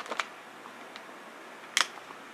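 A few sharp clicks close to the microphone: two quick ones at the start, a faint one about a second in, and a louder one near the end.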